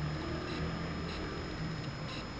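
Quiet, steady room noise with a faint hum and no distinct event.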